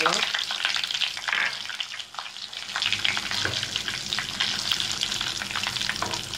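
Whole spice seeds sizzling and crackling as they hit hot oil in a clay pot: the tempering stage of a dish, with a steady hiss and many small pops.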